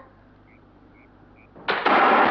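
A rifle shot fired at a target, a sudden loud report near the end that rings on and fades slowly. Before it, near quiet with three faint short chirps.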